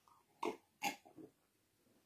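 A man gulping a drink from a glass: two short swallows about half a second apart, then a fainter third.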